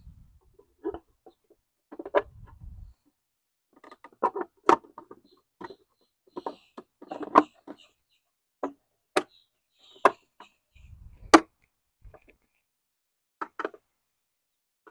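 A 3D-printed replacement fuse box cover being handled and fitted onto the engine-bay junction box: a series of irregular sharp plastic clicks and knocks, the loudest about eleven seconds in, with a few short low rumbles of handling in between.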